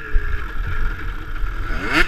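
Dirt bike engine running on a trail ride, revving up sharply near the end.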